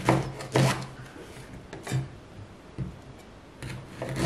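Chef's knife slicing through ripe pears and knocking down onto a wooden cutting board. There are about five separate cuts, the loudest at the start and about half a second in.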